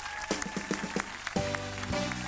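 Studio audience applauding over walk-on music, with sharp beats at first and sustained chords coming in about one and a half seconds in.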